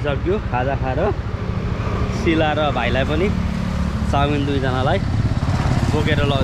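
Motorcycle engine running steadily as the bike rides along, heard close up from the pillion seat, a low rumble under a man's talking.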